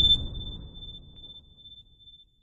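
Subscribe-animation sound effects: a low rumbling whoosh fading out over about a second and a half, with a click near the start and a single high ping ringing on steadily.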